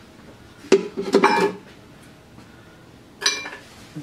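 Kitchenware clinking and knocking at a mixing bowl on the counter: a sharp knock under a second in, a quick run of ringing clinks just after, and one more ringing knock a little after three seconds.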